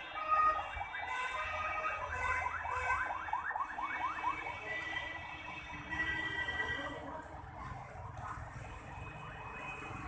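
An electronic alarm cycling through its tones: a run of rapid rising chirps, about six a second, for a couple of seconds, then steady held tones.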